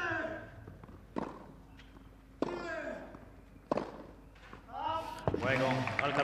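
Tennis rally: the ball struck by rackets about every second and a quarter, five hits in all, with a player's grunt on some of the shots. Voices rise near the end as the point finishes.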